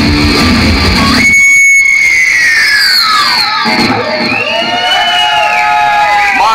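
A thrash metal band playing live cuts off together about a second in, ending the song and leaving amplified electric guitar feedback ringing on. The feedback tones slide slowly down in pitch, then waver up and down.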